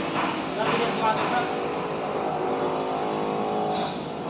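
A motor or machine running with a steady, even hum, with brief voices near the start.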